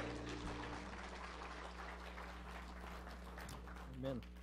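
Audience applauding, slowly thinning out, while the last acoustic-guitar chord of the song rings out over the first second.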